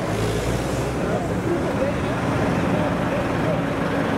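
Heavy diesel engine of farm machinery running steadily at an even speed.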